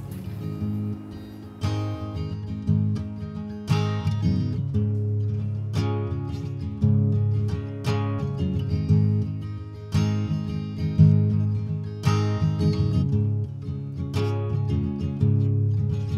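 Acoustic guitar being strummed in a slow, steady rhythm, with a strong chord about every two seconds.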